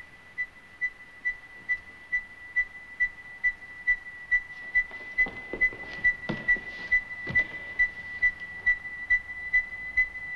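A high electronic beeping, about two evenly spaced beeps a second, slowly growing louder, with a few soft knocks in the middle.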